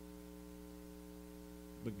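Steady electrical mains hum, a low buzz with a ladder of evenly spaced overtones that holds unchanged; a man's voice starts again near the end.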